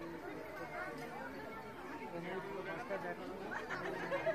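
Crowd chatter: several people close by talking over one another at once.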